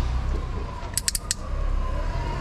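Four quick, sharp clicks in a row about a second in, over a steady low traffic rumble from the street.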